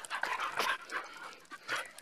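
Several dogs crowding close to the microphone: irregular short breathy noises and scuffles.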